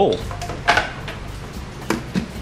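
A metal utensil knocking against a glass measuring cup of liquid plastisol as it is stirred: a few sharp clinks and knocks, one about two-thirds of a second in and another near the end.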